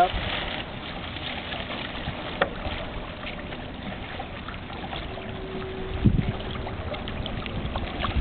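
Wind rumbling on the microphone and water lapping, with a couple of light knocks.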